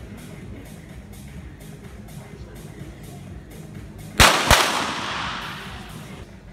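Two .22 sport pistol shots about a third of a second apart, sharp cracks followed by a fading wash of noise in the hall, over steady background music.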